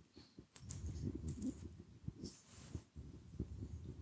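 Faint lecture-room noise in a pause between questions: soft low thumps and rustles with a few light clicks, and a brief high squeak about two and a half seconds in.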